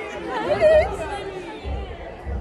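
Several young people chatting with lively, high-pitched voices, with a music bass beat thudding underneath about once a second.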